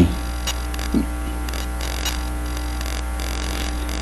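Steady electrical mains hum with faint static, with a short faint click about a second in.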